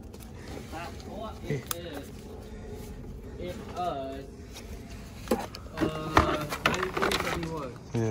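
Faint, distant voices talking, with a few light knocks from parts being handled.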